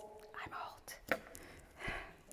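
Soft whispering from a person, faint and breathy, with a small click about a second in.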